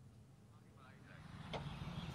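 Faint low background rumble, with a faint voice about a second in and a single click about a second and a half in, after which the background noise rises.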